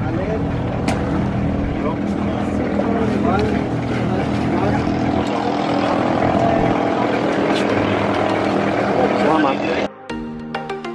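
Boat engine running steadily under the chatter of people on board. The engine sound stops abruptly just before the end.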